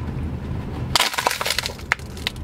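Thin plastic water bottle crackling and crinkling as it is squeezed and collapses while being drunk from. The crackles come in a dense run starting about halfway through, over a low rumble.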